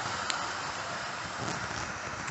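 Hornby OO gauge LMS Princess Coronation class locomotive and its four coaches running round the track, a steady whirr of motor and wheels on rail. There is a faint click shortly after the start.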